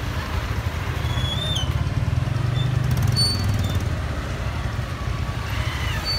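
Slow-moving road traffic in a jam: motorcycle and car engines running as a steady low rumble that swells slightly a couple of seconds in, with faint brief high tones over it.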